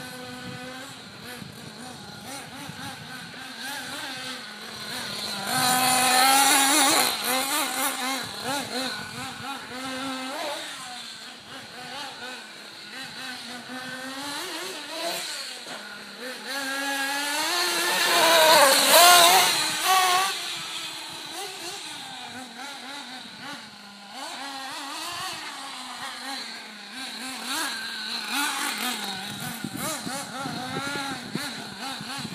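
Kyosho Inferno MP7.5 1/8-scale nitro buggy's small two-stroke glow engine revving up and down through the corners and straights. It is loudest as the buggy passes close, about six seconds in and again just before twenty seconds.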